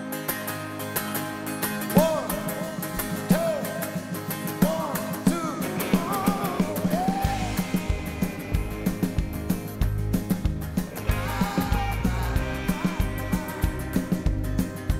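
Live band playing the opening of a song: guitar notes over the first half, then bass and a steady drum beat come in about halfway.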